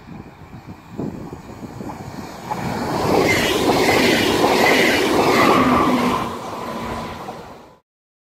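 Electric push-pull train of PESA double-deck coaches passing close at speed. The rumble of wheels on rail builds, is loudest for about three seconds with a few short steady tones within it, eases off, then cuts off suddenly near the end.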